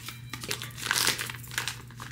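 Plastic packaging crinkling and rustling as a wrapped camera case is handled and unwrapped, in irregular scrunches that are densest about a second in.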